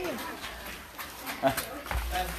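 Indistinct voices of performers and audience, fading after the start, with a sharp knock about a second and a half in and another just before the end.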